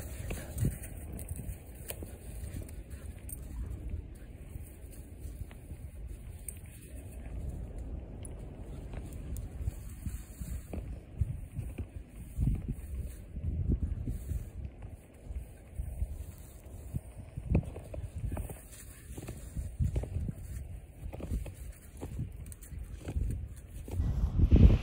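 Footsteps crunching through snow at an irregular pace, over a steady low rumble of wind or handling on the microphone.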